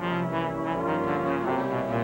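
Tenor saxophone playing a jazz solo, a flowing line of changing notes, over a band accompaniment with piano.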